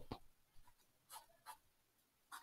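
Near silence with a few faint, short scratches of a stylus writing a word by hand, at about a second and a half second apart.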